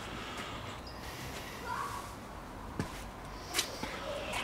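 Quiet outdoor background with a short faint chirp before the middle and two brief faint clicks in the second half.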